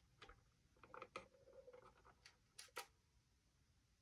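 Faint clicks and light taps of small plastic parts being handled and pressed together, about half a dozen in the first three seconds, then near silence.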